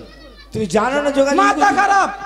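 A man's voice letting out a long, drawn-out cry, starting about half a second in, rising in pitch and then held.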